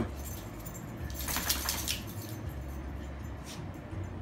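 Metal dog collar tags jingling in a cluster of clicks about a second in, as a dog rolls about on carpet, with another faint jingle near the end, over a steady low hum.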